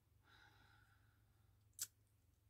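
Near silence over a steady low hum. A faint sound comes in about a quarter second in and lasts about a second, and a single sharp click comes near the end.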